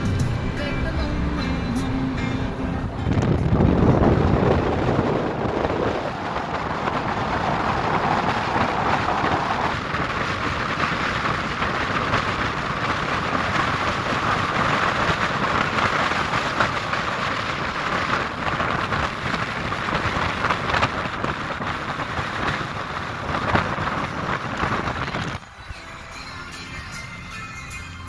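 A car driving at road speed: a steady rush of wind and tyre noise, loudest a few seconds in, that cuts off suddenly near the end.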